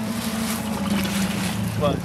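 Wind and rain noise on the microphone over a steady low hum, heard aboard a small boat at sea.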